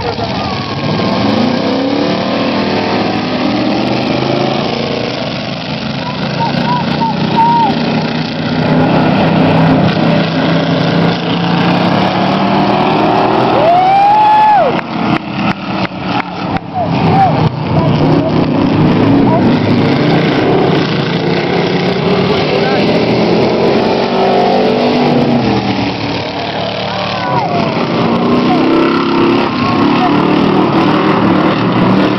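Engines of several full-size cars and trucks racing around an oval track, revving up and down as they pass, loud throughout. About halfway through the sound stutters in a quick run of cutouts.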